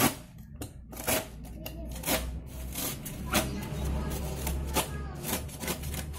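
Cardboard packaging rustling, scraping and tearing in short uneven bursts as a solar panel is worked out of a tight-fitting box.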